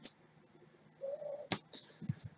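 A quiet pause in card handling, with a brief faint wavering tone about a second in, then a single sharp click as cards are touched.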